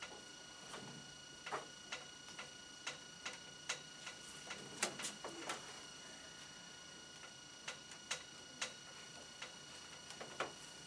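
Marker pen on a whiteboard: faint, irregular taps and short squeaky strokes as it is pressed onto the board, busiest in the first half and sparser near the end.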